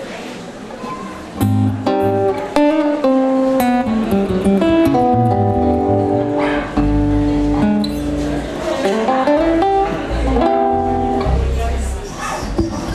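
Live acoustic guitar music: after a quieter first second and a half, the guitar comes in loudly with ringing chords and held notes that change every second or so.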